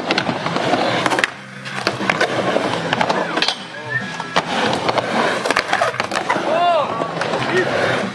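Skateboard rolling back and forth on a wooden mini ramp, with repeated sharp clacks and knocks as the board hits the ramp and coping. Voices call out in the background, with a short shout near the end.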